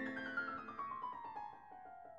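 Background piano music: a quick run of notes falling steadily in pitch and fading as it descends.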